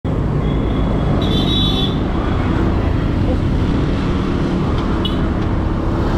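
Motor scooter riding along a road: a loud, steady mix of engine, tyre and wind noise, with passing traffic. Two short high-pitched tones sound over it, one about a second in and one near the end.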